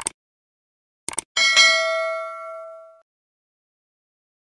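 Subscribe-button animation sound effects: a mouse click, then a quick double click about a second later, followed at once by a bright bell ding that rings out and fades over about a second and a half.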